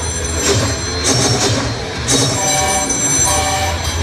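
Staged-fight sound effects over a theatre PA: several sharp hits with high ringing, metallic tones, over a steady low backing track.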